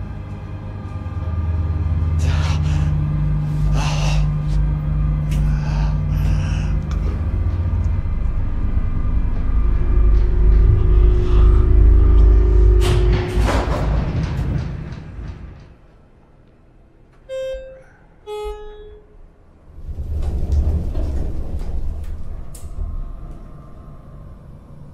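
Tense film score: sustained low droning tones with a few sharp hits, fading out about fifteen seconds in. Then two short high tones and a brief burst of low rumbling noise.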